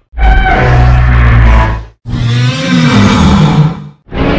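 Two recreated Godzilla roars in the style of Legendary Godzilla, one after the other, each about two seconds long, starting and cutting off abruptly with a short break between. The second bends in pitch.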